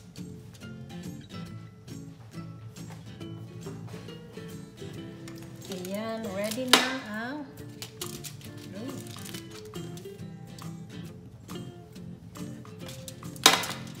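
Background music throughout, with two sharp clanks a little under seven seconds apart: a metal sheet pan of roasted squash being set down on the kitchen counter.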